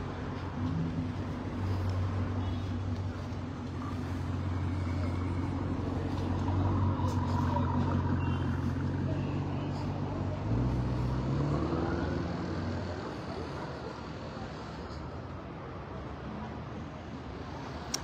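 A large vehicle's engine running close by with a steady low hum. Its pitch steps up about ten seconds in, then it fades away as the vehicle moves off, with street traffic behind it.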